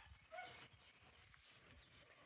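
Near silence with a faint, short dog bark about half a second in.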